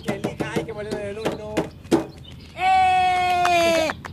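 A man laughing in short bursts, then, at about two and a half seconds in, a long held high-pitched wordless vocal cry lasting over a second, steady in pitch and dipping slightly as it ends.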